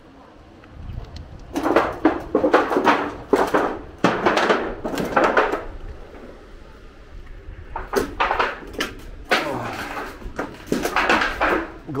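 Clattering and crunching of footsteps over rubble and rusty sheet-metal debris, in two bursts of a few seconds each, with a quieter gap between.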